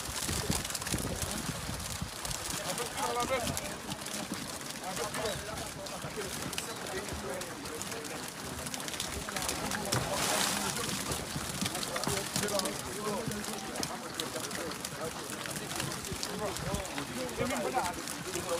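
Indistinct voices of several people talking around a fishing boat, with a short rush of noise about ten seconds in as a crate of fish is emptied onto the catch heaped in the hull.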